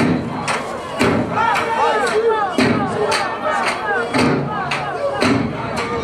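Zulu dancers' heavy foot stamps on a stage, landing about once a second with lighter beats between, while the crowd calls out in rising-and-falling cries.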